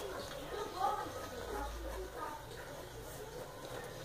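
Faint voices in the background over a low steady room hum.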